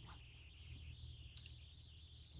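Near silence: faint room tone with a steady faint hiss.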